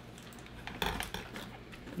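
A few light clicks and knocks of kitchen things being handled on a countertop, clustered around the middle.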